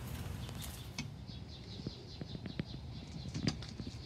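A ceramic kamado grill's lid being lifted open, heard faintly as light handling noise with a scatter of small clicks and knocks over a low steady hum.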